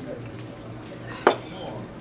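A single sharp clink about a second in, over faint room noise with low murmuring voices.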